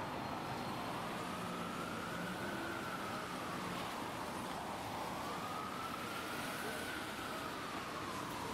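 Emergency vehicle siren wailing, its pitch rising and falling slowly about every four seconds, over the steady noise of city street traffic.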